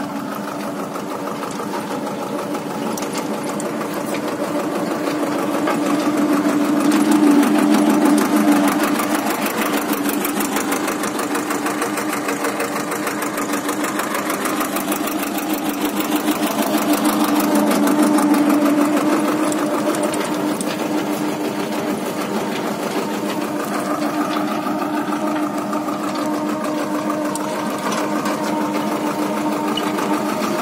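Farm tractor's diesel engine running steadily under load while pulling a row-crop cultivator, with a fast, even clatter. It swells louder twice, about a quarter of the way in and again a little past halfway.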